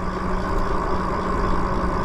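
Lyric Graffiti electric bike riding along a paved street: steady wind rush over the microphone and tyre noise on the asphalt, with a faint steady hum underneath from the motor.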